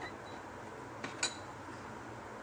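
Quiet room tone with a brief light clink of a kitchen utensil against a container a little over a second in, as spices are spooned into a mixer-grinder jar.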